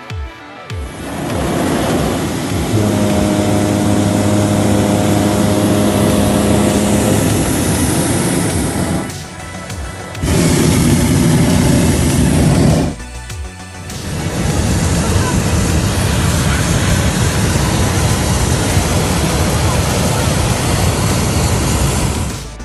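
Propane burner of a hot air balloon firing: a loud, steady roar that starts about a second in and drops away briefly twice, about nine and about thirteen seconds in.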